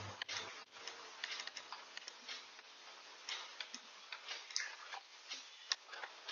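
Faint, irregular small clicks and taps, several a second, from handling the computer while the on-screen whiteboard is scrolled.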